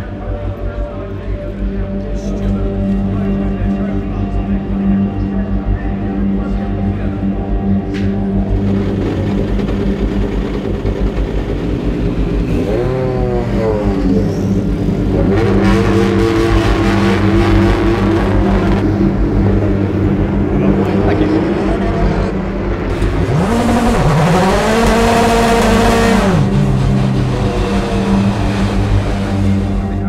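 BTCC touring car engines (2-litre turbocharged four-cylinders) running, with a steady low drone throughout. The revs dip and rise about 13 seconds in, then climb and fall again in a longer sweep about 23 to 26 seconds in.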